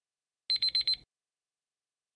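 Countdown timer's electronic alarm beeping as the countdown runs out: four quick, high beeps in about half a second.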